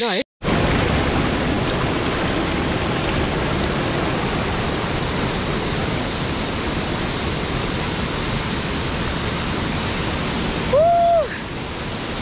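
Shallow mountain stream rushing over rock, a steady, even roar of water after a brief dropout at the very start. A short voice-like 'oh' sounds near the end.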